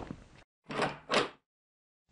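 A sharp knock fading out, then two short rushing swells in quick succession, then a moment of silence.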